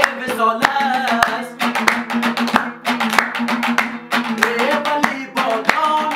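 Hazaragi folk song: a dambura strummed briskly with a steady harmonium drone and hand claps keeping time, and a man's singing voice coming in at the start and again near the end.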